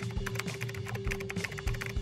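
Computer keyboard typing: a quick, uneven run of key clicks, over a low sustained tone of background music.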